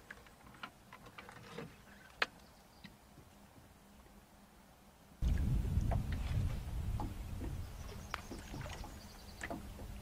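Light clicks and knocks of fishing gear being handled in an aluminium boat, the sharpest about two seconds in. About five seconds in, a low rumbling noise starts abruptly and carries on under a few more light clicks.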